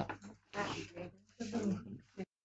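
Three short bursts of soft voices, murmuring and light laughter from people at the table, each about half a second long.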